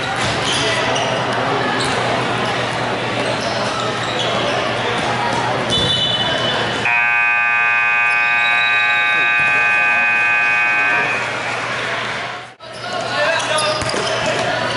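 Gym scoreboard buzzer sounding one loud, steady tone for about four seconds in the middle, over the noise of players, ball and voices in a large hall. A brief higher tone comes just before it, and the sound cuts out for an instant near the end.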